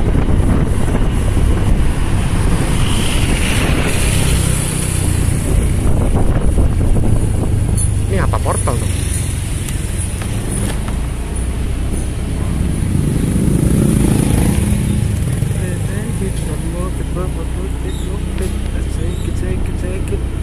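Steady low rumble of a vehicle driving slowly along a street, with road and wind noise on the microphone, swelling briefly about two-thirds of the way through.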